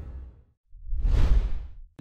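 Two whoosh sound effects for a logo transition: the first fades out about half a second in, and after a short silence a second swells up and dies away again.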